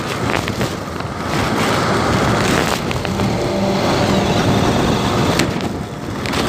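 Bajaj Pulsar 220F's single-cylinder engine running steadily while riding, mixed with wind and road noise.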